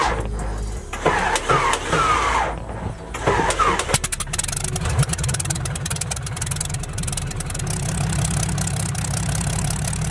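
The 1946 Fairchild 24's engine being cranked by its starter, a whine that falls and recovers in a rhythm as the propeller turns over, then catching about four seconds in and settling into a steady run.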